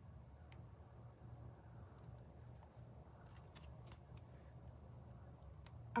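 Faint handling sounds of a small sticker's paper backing being folded and worked between the fingers: scattered light crackles and ticks, over a faint low hum.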